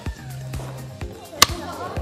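A single sharp shot from an air rifle being test-fired, about a second and a half in, over background music with a steady beat.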